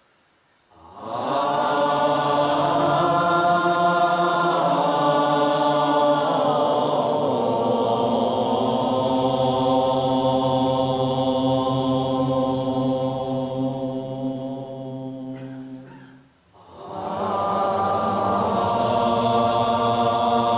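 Voices chanting on long held tones. A first phrase starts about a second in and slides in pitch partway through; it breaks off briefly near the end and a second held phrase begins.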